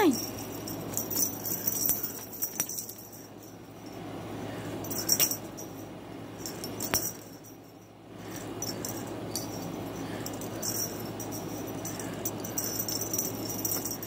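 A cat batting and grabbing at a feather-stick toy on a leather chair: uneven rustling and scraping with scattered light clicks and a few sharper taps.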